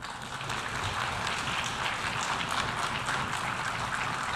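An audience applauding: a steady wash of many hands clapping.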